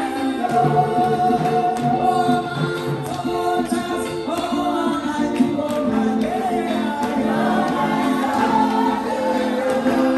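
A church congregation singing a gospel song together, with hand clapping.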